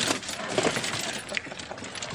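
Golf cart jolting over bumpy ground, its body and fittings rattling with quick, irregular clicks.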